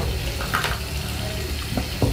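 Shower water running: a steady hiss of spray.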